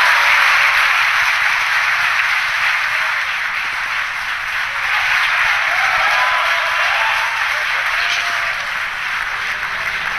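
A large crowd applauding, a steady wash of clapping with some cheering voices that eases slightly toward the end, celebrating a good stage separation and upper-stage engine ignition.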